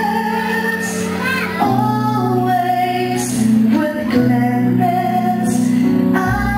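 Music: a woman singing a slow song in long held notes over instrumental accompaniment.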